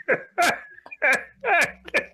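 A man laughing in about five short, separate bursts, each dropping in pitch.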